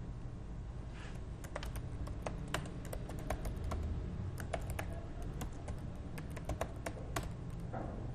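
Typing on a computer keyboard: irregular runs of keystrokes starting about a second and a half in, over a low steady hum.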